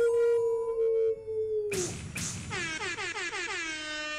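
YouTuber channel intro jingle: a loud held electronic tone that sags and cuts off about a second and a half in, then a tone sweeping downward in pitch and settling into a steady low drone.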